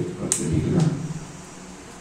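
Only speech: a man addressing a meeting through a microphone in short phrases, trailing off into a pause near the end.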